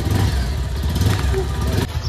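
Motorcycle engine running with a steady low rumble. It cuts off abruptly near the end.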